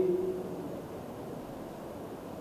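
Steady low background hiss of room tone between a man's spoken phrases. The tail of his last word fades out right at the start.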